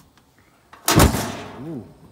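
Gas burners of a Thermos gas grill lighting with one sudden, loud whoomp about a second in, which dies away over most of a second; a voice says "Ooh" as it fades.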